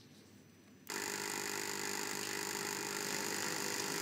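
Steady electronic tone from the quiz's answer-countdown timer, cutting in abruptly about a second in and holding at an even level.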